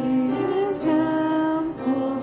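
Women's voices singing a slow hymn melody into microphones, each note held and then stepping to the next pitch.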